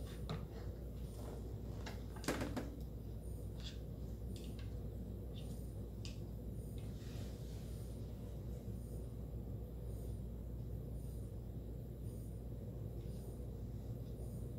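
Light taps and small clicks from hands handling a phone on a desk stand, over a steady low room hum, with one sharper knock a little over two seconds in.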